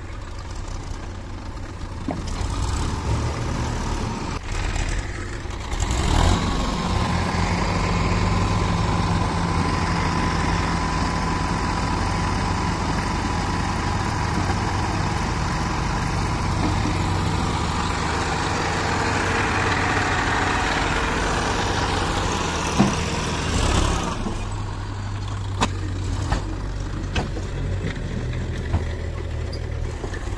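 Massey Ferguson 241 DI tractor's three-cylinder diesel engine running, raised to a higher, louder speed from about six seconds in while the trolley is tipped to dump its load of earth, with a steady high whine over it; about twenty-four seconds in it drops back to a lower speed.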